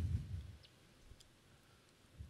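A man's voice trails off at the start, then near silence broken by a couple of faint clicks.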